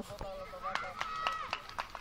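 Youth football matches: a child's high shout about a second in, over distant voices and scattered short knocks.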